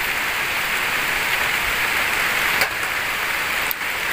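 Heavy rain pouring down steadily, an even, dense hiss with no let-up.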